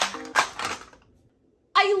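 Plastic packaging crinkling and clicking as a Mini Brands toy capsule and its inner wrapper are pulled open, in a short clatter that fades within about a second.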